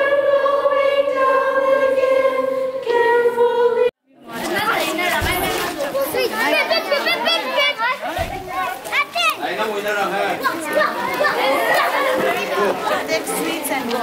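Children singing together, holding long notes, cut off suddenly about four seconds in; then a crowd of children chattering and talking over one another.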